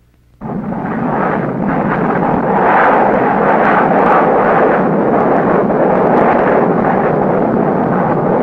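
Steady jet engine noise of a Navy T-2 Buckeye jet trainer flying its carrier landing approach with its landing gear down, starting about half a second in.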